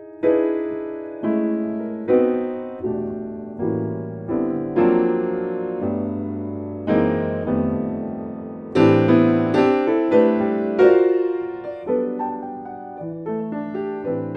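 Grand piano played solo in a jazz style: full chords struck one after another, about once a second, each left to ring and fade, with the strongest strikes a little past the middle.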